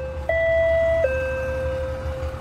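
Two-tone electronic door chime sounding a 'ding-dong': a higher note about a third of a second in, stepping down to a lower note about a second in that rings on and fades.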